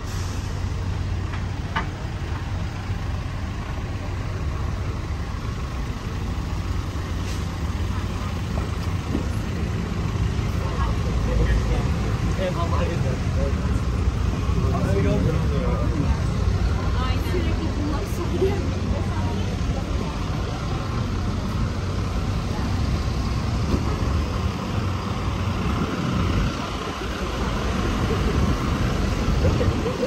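Busy city-street ambience: a steady rumble of road traffic, with cars, taxis and city buses running slowly close by and passers-by talking indistinctly.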